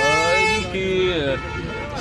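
A man speaking, with a steady held tone, like a vehicle horn, sounding under his voice for about the first second.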